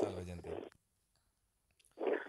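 A man's voice trails off in the first moments, followed by a pause of near silence with a few faint clicks.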